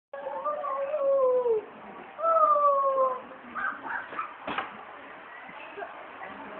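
A canid howling twice, each call falling in pitch: the first lasts about a second and a half, the second about a second. Quieter scattered sounds and a brief knock follow.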